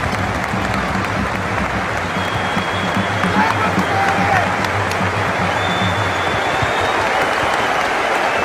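Large arena crowd applauding, a dense, steady wash of clapping that welcomes a visiting coach onto the court.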